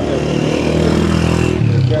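An engine running steadily nearby, its pitch shifting about one and a half seconds in.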